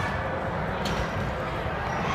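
Gym crowd murmur with a single sharp knock of a basketball about a second in, as a free throw comes down on the rim.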